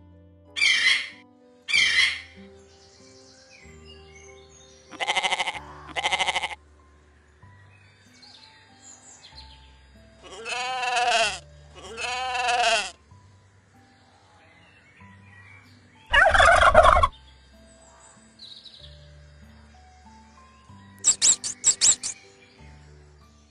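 A string of animal calls over soft background music. Paired calls of several animals come one after another, with two sheep bleats near the middle and a quick run of high mouse squeaks at the end.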